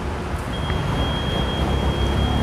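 Busy city street ambience: a steady low traffic rumble under a general wash of noise, with a thin, steady high tone coming in about half a second in.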